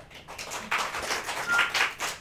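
A few people clapping: quick, uneven claps that start about a third of a second in and keep going.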